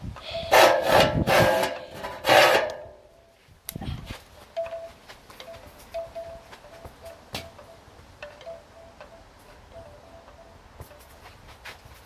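Loud rustling and scraping as the phone is handled and set down, lasting about two and a half seconds. After that it is faint: two sharp knocks, and a faint high note repeating in short pips through most of the rest.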